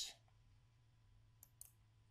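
Near silence with low room tone and two faint, short clicks about one and a half seconds in.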